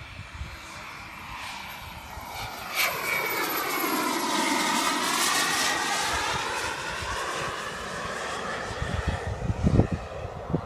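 Radio-controlled model HondaJet flying past, its jet engine noise swelling to a peak about halfway and then fading as it moves away.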